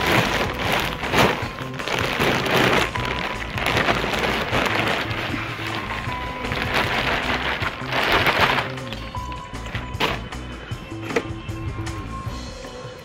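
Compost pouring out of a plastic sack onto the soil of a raised bed, with the rustle of the sack, coming in several bursts as the sack is tipped and shaken.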